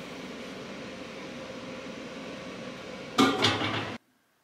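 Kitchen room sound with steady low noise, then about three seconds in a brief loud clatter of dishes or cookware being handled at the counter.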